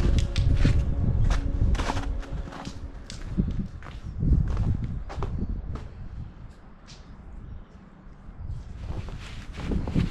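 Footsteps on a snowy, slushy footpath, irregular steps over a strong low rumble on the microphone; it quietens for a moment about eight seconds in before picking up again.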